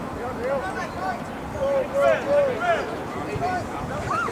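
Several distant voices talking and calling out in short shouts over a steady background murmur, with no words clear enough to make out.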